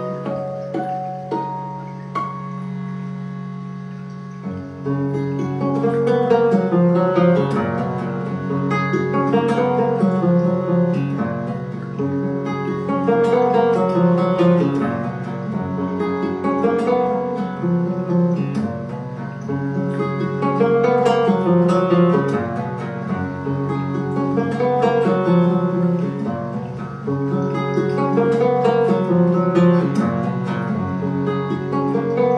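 Solo guitar playing a slow instrumental piece: a sustained low drone at first, then repeating picked arpeggio patterns that come in about four and a half seconds in and carry on over the drone.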